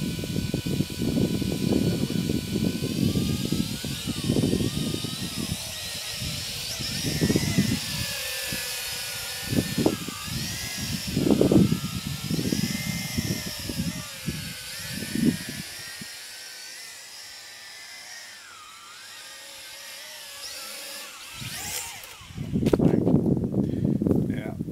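WLtoys V353 quadcopter's electric motors and propellers whining in flight, the pitch rising and falling as the throttle changes, with wind gusting on the microphone. The whine stops about two seconds before the end.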